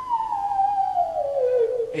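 PC theremin emulator program sounding one sine-like tone that glides steadily down in pitch, from a high whistling note to a middle one, with a slight waver near the end.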